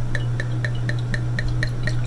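Wine glugging out of a bottle into a glass: a quick, even run of short gurgles, about five a second, over a steady low hum.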